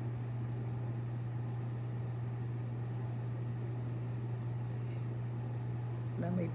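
A steady low hum with a faint hiss over it, and a few faint soft ticks in the first couple of seconds.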